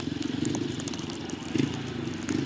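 A motorcycle engine running steadily with a fast, even pulsing note, with scattered faint clicks and crackles over it.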